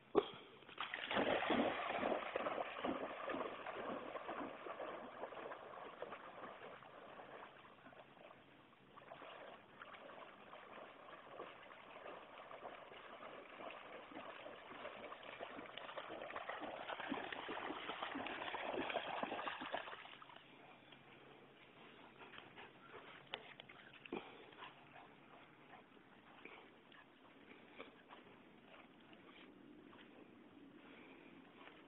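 A Labrador retriever splashing through shallow water after a thrown stick. The splashing starts about a second in and tapers off, swells again, and stops suddenly about two-thirds of the way through.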